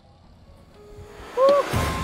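A rising whoosh that swells from near quiet to a loud peak about one and a half seconds in, with a short chirp at its crest. Background music starts near the end.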